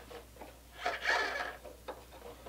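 Small handling noises of a plastic pushrod link and its hardware being fitted by hand: a soft brief rustle about a second in and a light click near the end.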